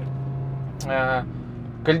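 Audi R8 V10 Plus's 5.2-litre V10 engine running at a steady low drone, heard from inside the cabin while driving; the drone fades about halfway through and comes back near the end.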